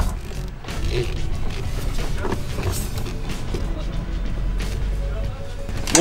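Low, steady rumble of a Volkswagen Golf Mk2 rolling slowly on its tyres as it is pushed with the engine off, with background music.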